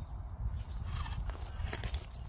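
Scattered knocks and crackles on dry pine needles and bark, the clearest near the end, over a steady low rumble of wind on the microphone.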